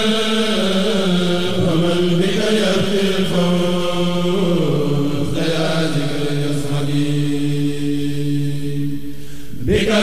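Devotional Arabic verse chanted by male voices in long drawn-out notes. About halfway the melody slides down to a lower note held until near the end, when a new line begins.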